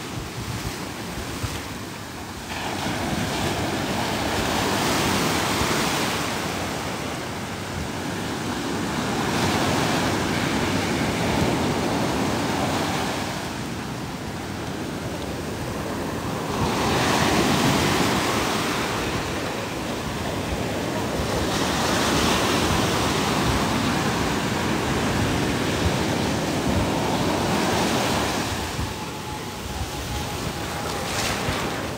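Ocean surf: waves breaking and washing in around the camera in loud surges every few seconds, with wind buffeting the microphone.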